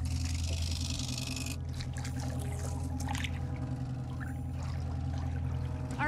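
Water pouring and splashing for about the first second and a half as a young bonnethead shark is let go from a boat into the sea, then fainter water sounds, over a steady low hum.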